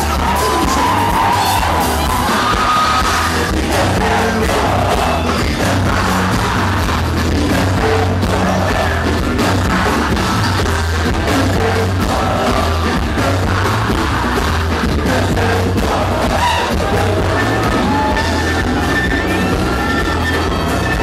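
Live band playing an upbeat Brazilian pop song, with drums, bass and electric guitar under lead singing, and a crowd yelling and singing along.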